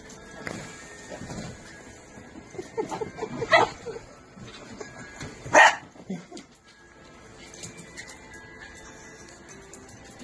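Small dog barking: a quick run of short yaps about three seconds in, then one loud, sharp bark a couple of seconds later.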